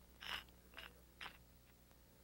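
Three short, faint puffs of air from a HomeRight Quick Painter's paint pad as its trigger is tapped, the first the loudest. This is "burping" the Quick Painter: trapped air escaping from the paint chamber before the paint comes through.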